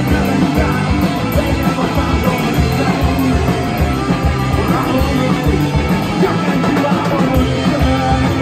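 Live punk rock band playing loud: electric guitar through Marshall stacks, bass and drums, recorded from the crowd in a small club.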